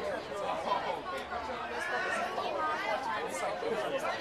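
Background chatter: several people talking at once, no single voice standing out.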